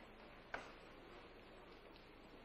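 Near silence: faint room tone with one sharp tap about half a second in.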